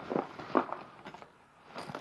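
Fabric tackle bag being handled as its front is opened: two short scuffs of cloth a fraction of a second apart, then a fainter one near the end.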